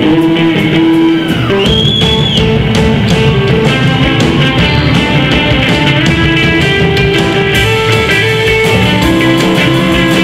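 Live band music led by electric guitar over a steady drum beat, with a short high sliding note about two seconds in.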